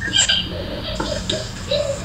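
Short, broken scraps of voices over a steady low hum, coming through a phone's speaker on a video call.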